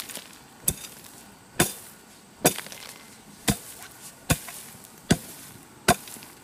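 A hoe chopping into dry, clumpy soil and grass tufts: seven sharp strikes, a little under one a second, breaking up the ground.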